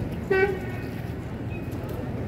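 A single short vehicle horn toot, a steady tone lasting about a fifth of a second, about a third of a second in, over steady street background noise.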